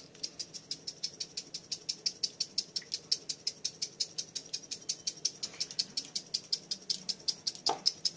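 Red chilli flakes rattling in a spice jar as it is shaken quickly and repeatedly over a bowl, about six shakes a second.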